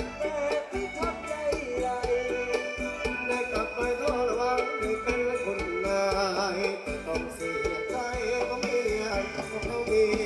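Live band playing Thai ramwong folk dance music, a wavering melodic line over a steady percussion beat.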